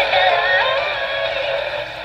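Coby CR-A67 clock radio's small speaker playing music with a voice singing. The sound is thin, with no bass, and gets a little quieter near the end.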